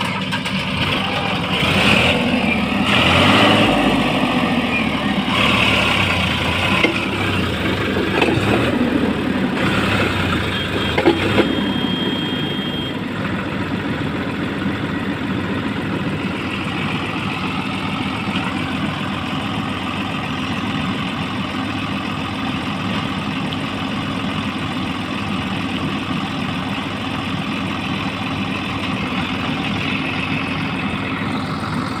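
Diesel engines of a Sonalika tractor stuck in mud and a JCB 3DX backhoe loader pushing it, both working under load. The engine sound rises and falls over the first twelve seconds or so, then settles to a steadier, slightly quieter run.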